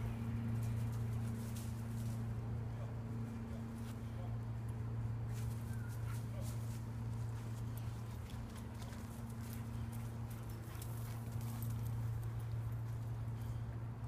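A steady low hum of unknown source throughout, with faint, irregular crunching of footsteps on dry fallen leaves.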